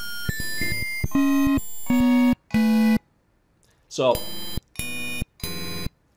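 LMMS's Nescaline synthesizer playing back a pattern of 8-bit, NES-style tones: a quick rising run of short beeps, then three longer buzzy held notes stepping down in pitch. After a short pause, two more short notes sound near the end.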